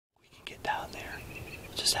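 A man whispering quietly, with hissy sibilant sounds.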